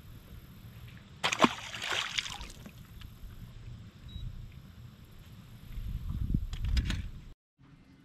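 A sharp knock and a splash of water about a second in, as a freshly caught bass is let go into the water, followed near the end by a low rumble.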